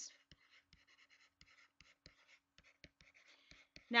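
Stylus writing on a tablet: faint, irregular clicks and light scratches, several a second, as words are handwritten.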